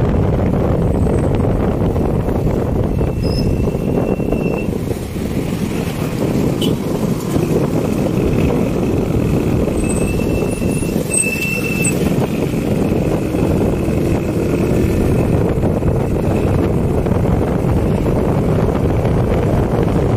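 Steady rumble and road noise of a moving vehicle, with wind on the microphone.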